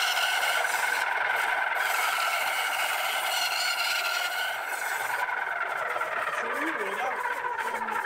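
Band saw blade cutting through a piece of wood: a steady rasping hiss that starts abruptly as the blade enters the wood and thins out over the last few seconds.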